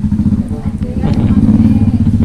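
Motorcycle engines running close by, a steady low drone with a fast pulse.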